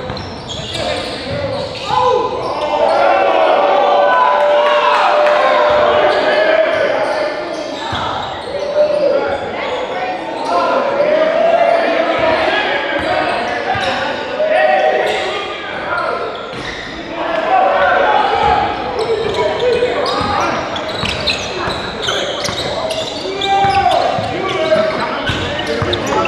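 A basketball bouncing on a hardwood gym floor during play, with players' and spectators' voices ringing through a large hall.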